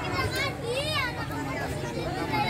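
Children shouting and squealing at play, with one high squeal that rises and falls in pitch just under a second in, over general voices.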